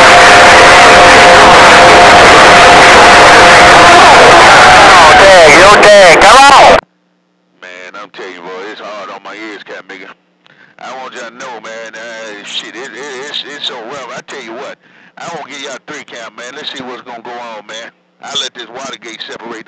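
A very loud, distorted wash of noise with two steady tones underneath, which cuts off suddenly about seven seconds in. After a brief silence a voice comes through a narrow, phone-like voice link in short broken phrases.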